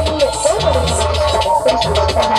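Electronic music played from a laptop and controller: a pulsing deep bass under fast, even ticking percussion and a bending, wavering melodic line.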